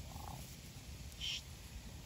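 Two short, faint animal calls over a low outdoor rumble: a lower call just after the start, then a higher, louder one a little past a second in.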